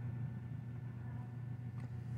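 Steady low background hum with no distinct event; the booting Chromebook makes no sound of its own here.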